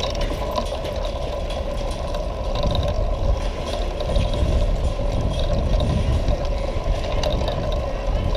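Bicycle rolling over stone paving, with rapid faint ticking and rattling from the bike over a steady low rumble and a faint steady hum.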